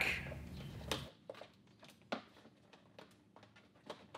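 A few faint, short clicks and handling sounds from plastic push pins being worked out of golf-cart body trim, with near silence between them.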